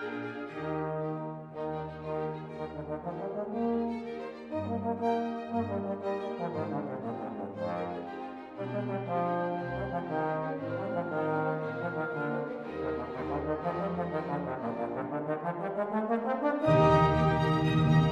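Solo trombone playing a melodic line of sustained notes in a classical concerto. Near the end the full orchestra comes in, suddenly louder.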